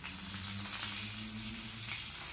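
Hilsa (ilish) fish pieces frying in hot oil in a frying pan, with a steady sizzle. A faint low hum runs underneath.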